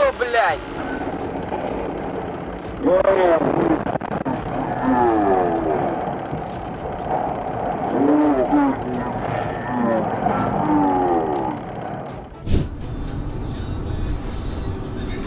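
Raised human voices shouting in rising and falling calls over background music, followed by a sudden bang about twelve and a half seconds in.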